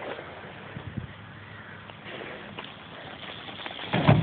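Faint outdoor background noise with scattered small ticks while a bicycle approaches from across a field; just before the end a louder burst as the bicycle reaches the ramp close by.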